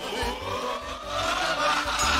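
The opening sweep of a radio station jingle: a dense, noisy sound that rises in pitch across the two seconds and leads into music.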